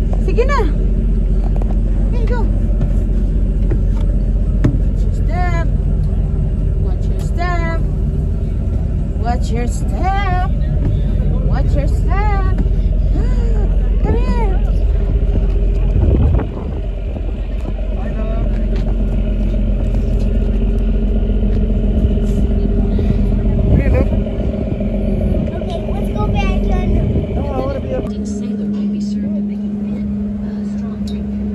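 Tour boat under way: a steady low engine rumble with wind buffeting the microphone on the open deck, and a steady hum coming in near the end.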